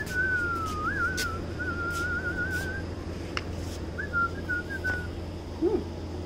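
A person whistling to call a puppy: one long warbling whistle, then a shorter, broken whistle about four seconds in.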